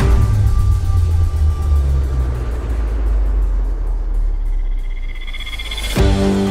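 Logo-intro sound effect laid over music: a sudden deep boom that rumbles on, with a high whine building up near the end.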